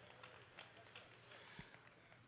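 Near silence: room tone, with a few faint ticks and one soft low thump about one and a half seconds in.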